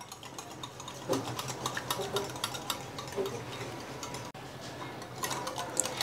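Wire balloon whisk beating egg yolks by hand in a ceramic bowl, its wires ticking rapidly against the bowl's sides as the yolks are whipped until creamy.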